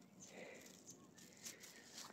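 Near silence: faint outdoor background with a few soft crackles.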